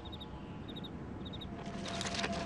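Faint high chirps in quick groups of three, about every half second, over a quiet steady hum and hiss. A grainy rustling noise starts to build near the end.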